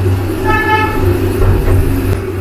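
A short, steady horn toot lasting about half a second, a little after the start, over a steady low hum.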